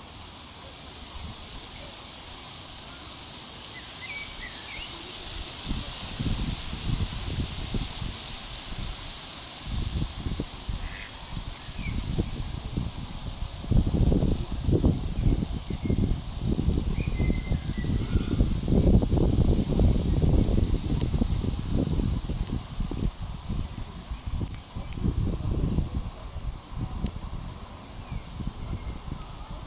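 Outdoor ambience: a steady high hiss with an irregular, gusty low rumble that grows louder toward the middle, and a few faint short chirps.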